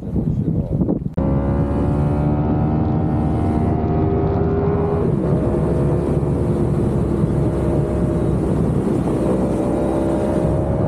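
Wind buffeting the microphone, then from about a second in a motorcycle engine running steadily at speed, heard on board. Its pitch creeps up and shifts at about five and nine seconds in.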